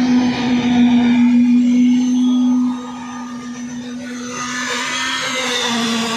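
Construction machinery motor running with a steady hum during a concrete roof pour, dropping in loudness about three seconds in.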